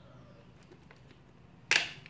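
A single sharp plastic click about three-quarters of the way in: a part of a Brother TN2385 toner cartridge snapping back into place as its gear end is reassembled after the reset.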